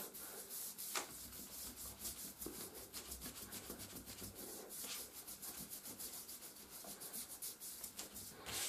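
Hands rubbing and kneading the skin of a bare foot and ankle in a self-massage, a faint, quick run of repeated scratchy rubbing strokes, several a second.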